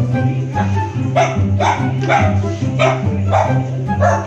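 A small dog barking repeatedly, about two barks a second, starting about half a second in, over background music with a steady beat.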